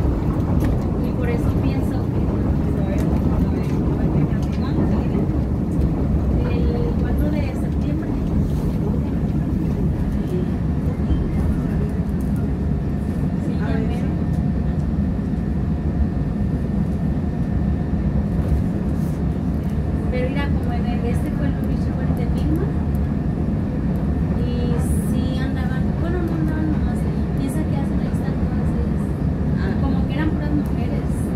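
Interior of a CTA 2600-series 'L' car running between stations: a steady rumble of wheels on the rails with a faint, even whine over it.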